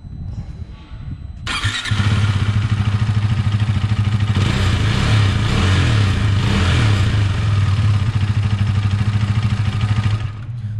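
KTM RC 390 BS6's single-cylinder engine running, heard close at its stock exhaust silencer. The exhaust note is quieter for the first second and a half, then suddenly much louder, and holds steady from there.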